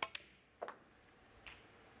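Snooker balls clicking: the cue tip strikes the cue ball, then the cue ball sharply clicks into an object ball about half a second later. A fainter knock follows about a second and a half in.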